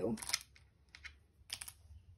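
Small wooden stamp-game tiles clicking as they are set down and tapped against one another, a few light, sharp clicks about half a second to a second apart.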